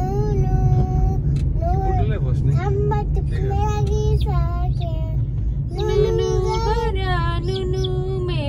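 A young child singing in long held, gliding notes, breaking off briefly a little past the middle, over the steady low rumble of the car driving.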